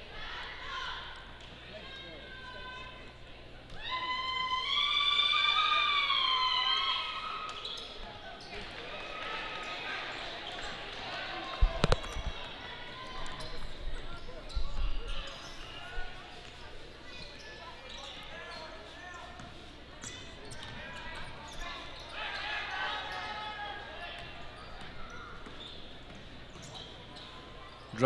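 Basketball game sound in a large gym hall: a steady murmur of crowd voices, a basketball bouncing and scattered short knocks. A loud, high, wavering shouted call lasts about three seconds starting around four seconds in. A single sharp thud comes a little before the midpoint.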